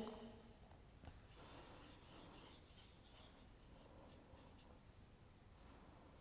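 Very faint, soft brushing of a watercolour paintbrush on watercolour paper as a circle is painted, a series of light scratchy strokes in the first few seconds; otherwise near silence.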